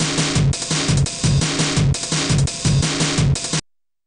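Programmed breakbeat played back from single-shot drum samples at 170 BPM: kick, snare and closed, open and foot-pedal hi-hats in a looping pattern. It cuts off suddenly when playback is stopped near the end.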